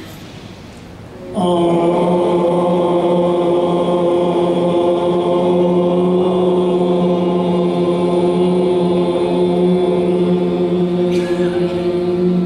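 A voice chanting one long syllable as a meditation mantra, starting about a second and a half in and held steadily at a single pitch for about ten seconds.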